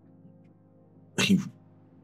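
Faint, steady background music, then about a second in a short, loud breathy vocal sound from a man, ending in a brief voiced tail.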